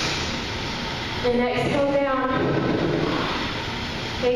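Steady whir of a roomful of stationary spin bikes being pedalled, with a woman's voice calling one long drawn-out cue about a second in.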